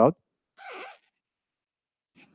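A short sip from a cup, one brief rasping slurp a little after half a second in.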